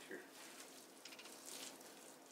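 Near silence, with faint soft squishing of raw ground meat being handled by hand.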